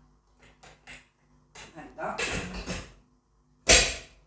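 Stainless-steel pressure cooker lid being fitted onto its pot: a few light clicks, a longer stretch of metal handling, then one loud sharp clack near the end as the lid's clamps snap shut.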